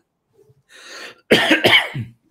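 A man coughing: a soft breath in, then two sharp coughs about a second and a half in.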